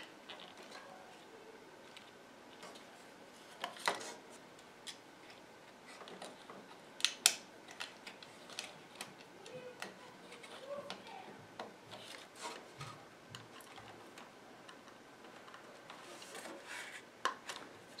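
Small plastic cable connectors being pushed by hand onto the circuit board of a Xerox Phaser printer's control-panel bezel: faint, scattered clicks and rubbing, the sharpest a pair of clicks about seven seconds in.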